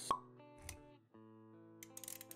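Intro jingle sound effects for an animated logo: a sharp pop about a tenth of a second in, a low thud just after half a second, then held musical notes that come back after a brief dip near one second, with a quick run of clicks near the end.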